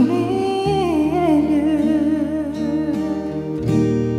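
A man humming a wordless, wavering melody into a microphone over an instrumental backing of held notes.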